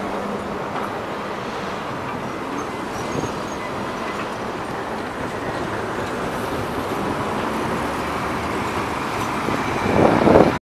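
LVS-97K articulated tram rolling past close by and moving off, its wheels running on the rails, over steady street traffic noise.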